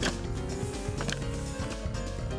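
Background music with held notes, and sharp clicking strokes at the start and again about a second in.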